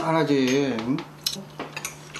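A man's voice for about the first second, then a few light clicks of chopsticks and tableware against dishes at a meal table.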